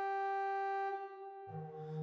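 Organ holding a steady chord that stops about a second in. After a brief lull, a new, lower-voiced organ chord enters about a second and a half in.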